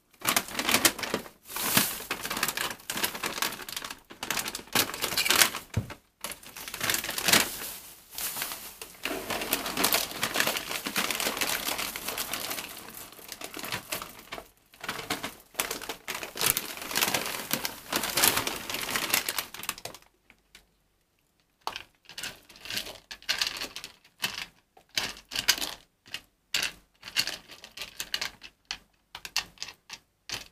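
Cat litter pellets poured from a bag into a plastic litter tray, clattering in long runs along with the rustle of the bag. Near the end come shorter, scattered rattles and the crinkle of a plastic bag.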